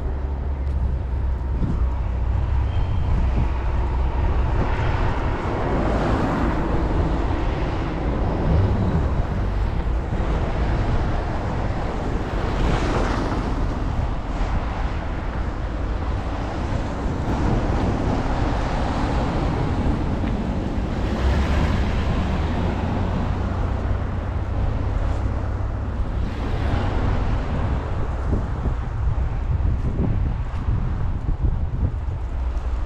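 Wind buffeting the microphone during a snowstorm: a steady low rumble with broader swells about every seven seconds.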